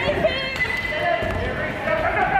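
A basketball bouncing on a hardwood gym court during play, under shouting voices.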